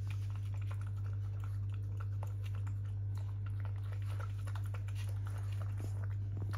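A Shih Tzu eating chicken in gravy from a plastic tub: rapid, irregular small clicks of chewing, over a steady low hum.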